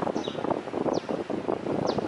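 Wind buffeting the microphone over rough outdoor background noise, with a short high falling chirp about once a second.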